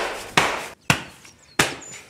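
Open-hand slaps on the back of a man's neck (collejas), landing in a quick run about one every half second, four sharp smacks in all.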